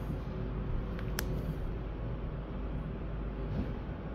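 Dover hydraulic elevator car in travel, giving a steady low rumble and hum, with a single sharp click about a second in.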